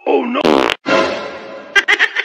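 A short, loud rasping burst lasting under a second, fart-like, followed by a quieter stretch with a voice in it and two sharp clicks near the end.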